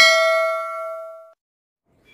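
A notification-bell 'ding' sound effect from a subscribe-button animation: one bright bell tone ringing out and fading away within about a second and a half.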